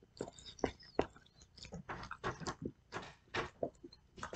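A person chewing a mouthful of chicken Caesar wrap close to the microphone: a quiet, irregular run of short, wet mouth clicks and smacks.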